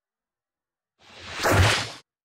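A whoosh sound effect for an animated title transition. After about a second of silence, a single rush of noise swells and then fades away by the end.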